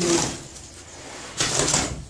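Steel shovel blade scraping over a concrete floor and through dry sand and cement as a 4-to-1 screed mix is turned by hand. Two strokes, about a second and a half apart.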